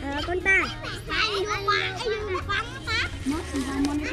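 Several children's high voices chattering and calling out over one another, in short overlapping bursts.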